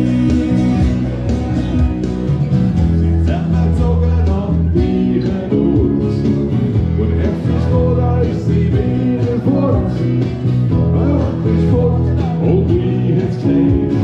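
Live band playing a song on electric bass and acoustic guitar, with a man singing.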